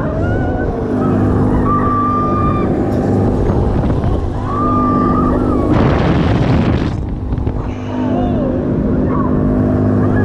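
Mondial Turbine thrill ride in motion: a steady low mechanical drone, with a louder rush of air noise for about a second around six seconds in.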